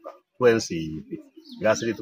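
A man speaking: speech only, with a short pause near the middle.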